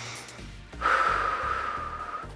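A woman lets out a long, audible exhale, starting just under a second in and lasting about a second and a half, with a steady whistling tone in it. It is the breath-out of a cued big breath during the exercise, over background music with a steady beat.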